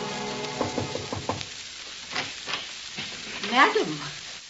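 Crackling surface noise of an old 1952 radio transcription recording, just after a music bridge ends, with a few faint clicks in the first second and a half and a short wavering voice sound a little past the middle.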